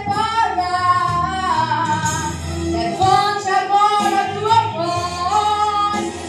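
A woman singing a Portuguese gospel song through a microphone and amplifier, drawing out long held notes that glide between pitches, with low steady accompaniment underneath.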